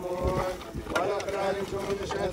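A group of men chanting a religious refrain together in long, held notes, mixed with the scrape and thud of shovels throwing earth into a grave.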